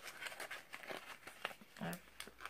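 Plastic packaging crinkling in quick, irregular crackles as a wrapped scented wax melt is handled.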